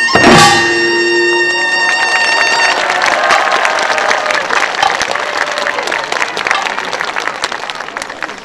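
Korean pungmul percussion ensemble hitting a final loud drum-and-gong stroke just after the start, the metal ringing dying away over about two seconds, then audience applause that fades.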